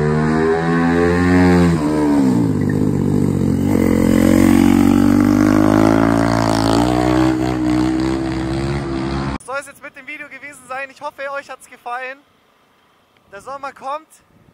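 Motorcycle engine revving hard as the bike rides up the bend. Its pitch dips near two seconds in, climbs again and holds, then the sound cuts off abruptly about nine seconds in.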